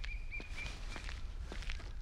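Footsteps on a dirt path, a few steps a second, over a low outdoor ambience rumble. A faint high trill wavers in the background and fades out about halfway through.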